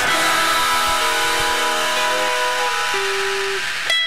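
Distorted electric guitar left ringing as a hardcore punk song ends: a few held notes that shift and thin out to a single tone. A sharp click comes near the end.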